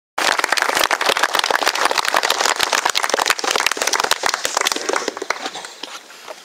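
Audience applauding, a dense patter of many overlapping claps that thins out and dies away near the end.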